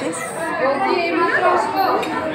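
People talking over one another, the chatter of a busy restaurant dining room.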